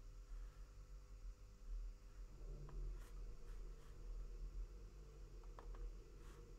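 Quiet room tone with a steady low hum and a few faint clicks of a computer mouse, scattered through the second half.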